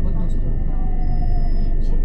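Cabin noise inside a Class 375 Electrostar electric multiple unit on the move: a steady low rumble from the wheels and track, with a high electrical whine and fainter tones that slowly fall in pitch.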